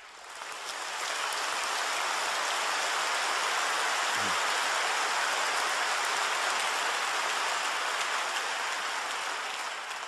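Large audience applauding: a dense clatter of clapping that builds over the first second, holds steady and eases slightly near the end.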